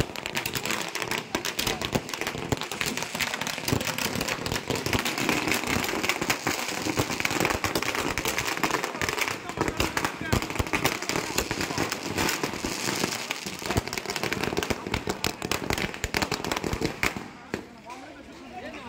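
A string of firecrackers going off in a rapid, continuous run of sharp bangs. The bangs thin out and stop about a second before the end.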